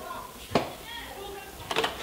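A corded desk telephone handset being picked up: a sharp plastic click about half a second in, then a short clatter of handling clicks near the end as it is lifted, with a faint voice in between.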